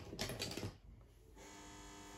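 Apartment intercom buzzer ringing: the postman's call, a steady buzzing tone that starts about a second and a half in and lasts about a second. Soft handling noises come before it.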